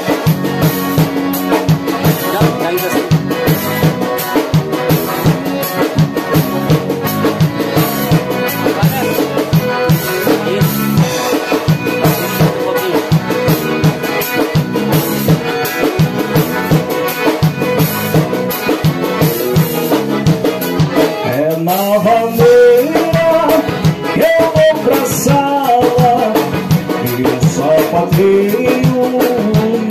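Live gaúcho band playing a vanera: two piano accordions over acoustic guitar and a drum kit keeping a steady, quick beat.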